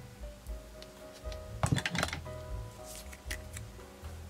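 Soft background music throughout, with a quick cluster of clicks and taps a little under two seconds in and a few lighter clicks about a second later, from a plastic glue bottle and paper pieces being handled on a tabletop.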